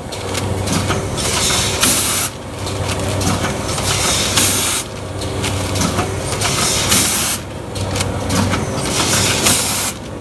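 Rotary premade-pouch packing machine with a volumetric cup filler running, its indexing cycle repeating about every two and a half seconds over a low motor hum. Each cycle ends in a burst of air hissing that cuts off sharply.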